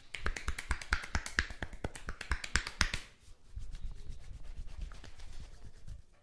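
Percussive massage strokes from a barber's hands on bare skin: a fast run of sharp slaps and claps, about seven a second, for about three seconds. Then a softer, duller rubbing sound with faint taps.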